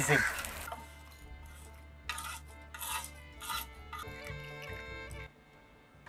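A tempering of dal, dried red chillies and curry leaves sizzling in hot oil as a metal spoon stirs it in the pan, the sizzle fading within the first second. Then a few short scrapes of the spoon in the pan, under faint background music.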